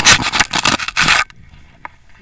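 Snow scraping and crunching against a pole-mounted action camera as it is dragged through the snow: a run of loud, rough bursts that stops about a second and a quarter in.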